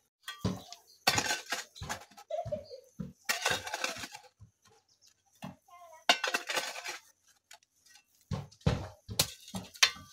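A hoe's metal blade chopping into soil and scraping earth out of a planting hole, in repeated strokes a couple of seconds apart.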